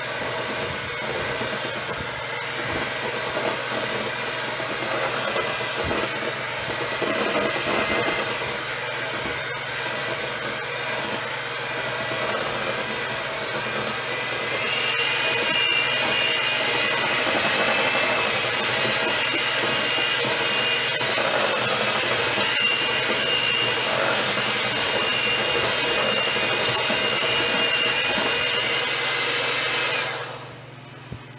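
Electric hand mixer running steadily, its beaters churning a thick mash of sweet potato in a stainless steel bowl. About halfway through, a high whine comes in and the sound grows louder.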